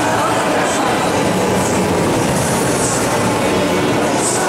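Euro-Sat roller coaster car rolling along its track with a steady rumble, with voices and background music behind it.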